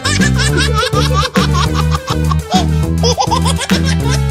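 Upbeat children's background music with a bouncy bass line, with baby-like giggling laughter mixed into the track.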